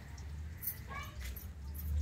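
A few faint, short animal calls, like a dog's whimper, over a low rumble that swells near the end.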